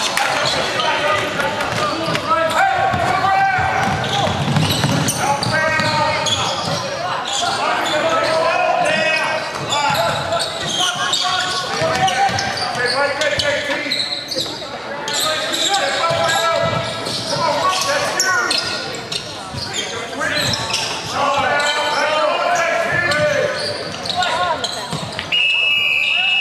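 Indoor basketball game: players and onlookers shouting and calling out, with a basketball bouncing on the hardwood court, echoing in a large gym hall. Near the end a steady high-pitched tone starts sounding.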